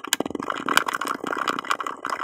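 Kinetic sand and nonpareil sugar sprinkles being pressed down in a glass by a wooden pestle: a dense, continuous crackling crunch of many tiny clicks as the sprinkles are squeezed and grind against the glass.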